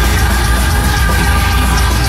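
Industrial metal band playing live at loud volume: a dense, sustained wall of music with a heavy, steady low end and held tones, without vocals.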